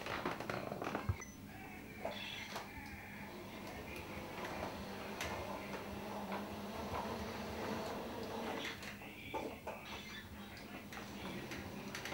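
A couple of clicks in the first second, then the wheelchair drive motors of a radio-controlled R2-D2 replica running with a steady hum as it drives.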